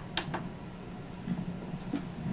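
Two soft clicks of a karaoke machine's control buttons being pressed, a fraction of a second apart near the start, over a faint steady low hum.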